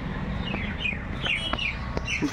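Small birds chirping: a quick series of short, falling chirps over a steady low rumble.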